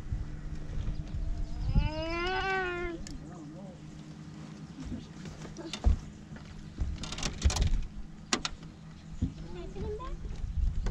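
A single drawn-out voice-like call, rising then falling in pitch, about two seconds in, over a steady low hum. Later come a few sharp knocks and clicks.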